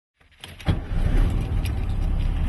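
Air-cooled VW Beetle flat-four engine idling steadily, coming in sharply about half a second in.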